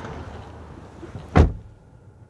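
A car door shutting with one heavy thump about a second and a half in, after some shuffling; the sound of the surroundings drops away once it is closed. It is the driver's door of a 2018 Jeep Grand Cherokee.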